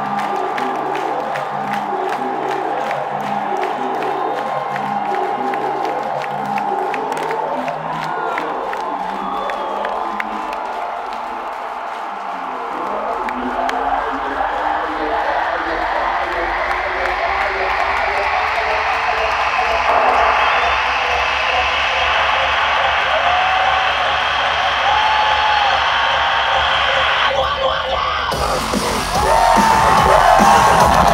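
Dubstep played loud through a concert hall's sound system, with a crowd cheering over it. A long rising build-up runs through the second half, the top briefly drops out near the end, and then a louder, fuller section kicks in.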